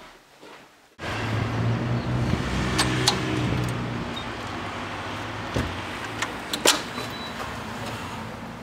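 A steady rush of outdoor noise cuts in suddenly about a second in, with a vehicle engine's low hum that fades a few seconds later. Sharp clicks and knocks follow as a storm door and front door are handled, the loudest of them near the end.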